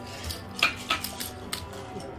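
Casino chips clicking against each other, about five sharp clicks in quick succession as they are handled on the table, over faint background music.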